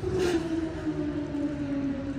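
A heavy vehicle's engine running steadily, its pitch drifting slowly lower.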